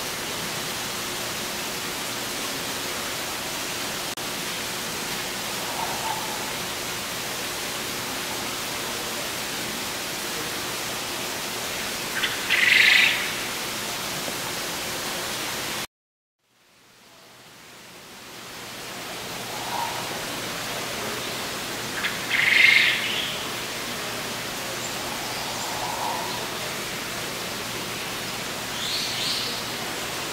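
Steady background hiss with a few short bird calls, the loudest about 12 and 22 seconds in. The sound cuts out suddenly about halfway through and fades back in over a couple of seconds.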